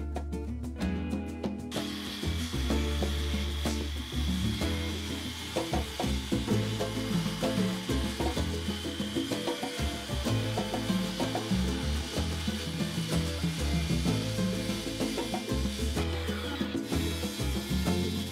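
Handheld circular saw cutting through timber boards, its blade noise mixed under background music; the cutting starts about two seconds in and breaks off briefly near the end.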